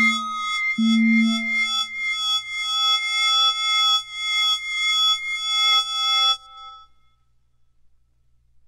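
Early-1970s electronic music: layered steady synthesized tones that swell and fade about twice a second over a low tone struck twice near the start. It cuts off about six seconds in to near silence.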